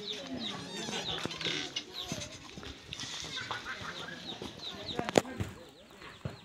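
Outdoor village ambience: small birds chirping over and over, with lower clucking calls and faint voices. A single sharp knock just after five seconds in.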